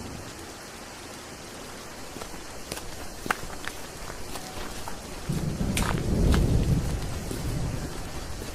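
Rain-and-thunder sound effect opening a rap track: steady rain with scattered sharp drip clicks, and a deep roll of thunder that swells about five seconds in and eases off near the end.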